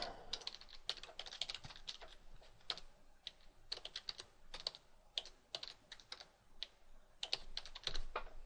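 Computer keyboard typing, faint and irregular: short key clicks, sometimes in quick runs, as a web address is typed in.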